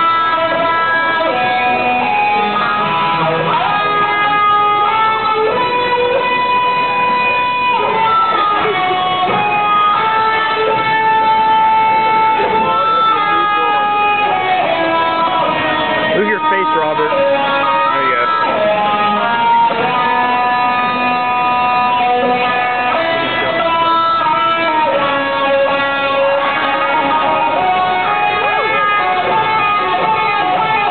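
Guitar playing continuously, a run of held notes and strummed chords.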